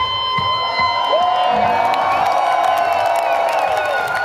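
Electric guitar solo through a stage amplifier, holding long sustained notes that bend slowly in pitch, with some vibrato near the end, over a crowd cheering.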